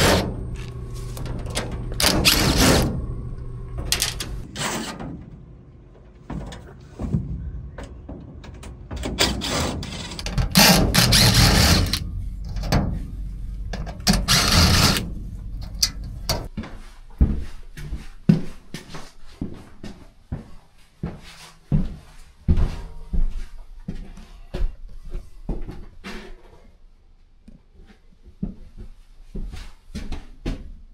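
Hand work on sheet-metal equipment: a run of knocks, clanks and rattles, with two longer, louder bursts of noise in the first half.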